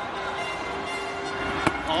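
A single sharp smack of a cricket ball into the wicketkeeper's gloves near the end, after the batsman swings at a cut and misses, over a steady held tone and stadium background noise.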